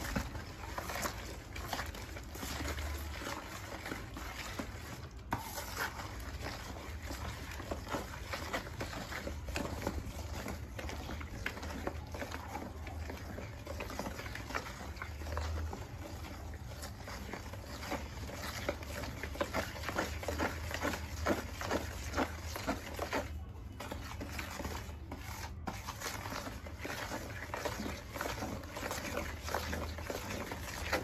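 Wooden stick stirring a foamy homemade liquid-soap mixture in a plastic basin: continuous wet swishing made of many quick small strokes.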